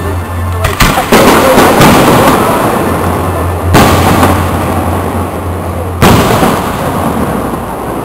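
Aerial firework shells bursting: a quick cluster of loud bangs about a second in, then single bangs near four and six seconds. Each bang is followed by a long rolling echo.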